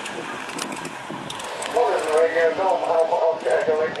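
Light aircraft's propeller engine running at low power as it taxis, heard as a steady background hum. A man's voice close by starts talking over it about two seconds in and is the loudest sound.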